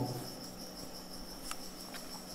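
A faint steady high-pitched tone over quiet room noise, with light scratching of a marker pen writing on paper and a small tick about one and a half seconds in.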